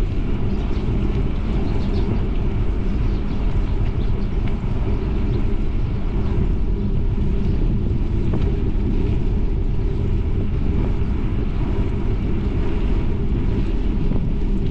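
Steady wind noise buffeting an action camera's microphone while riding along a paved road: a continuous low rumble with no breaks.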